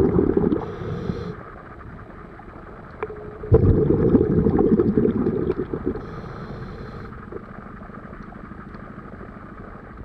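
Scuba diver breathing through a regulator, heard underwater: a long gurgling rush of exhaled bubbles that stops about half a second in and is followed by a short hiss of inhalation. A second burst of bubbles starts abruptly at about three and a half seconds, fades, and gives way to another brief inhalation hiss at about six seconds.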